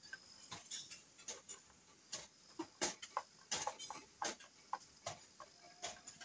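Faint, irregular clicks and light taps of parts being handled on a power saw under repair.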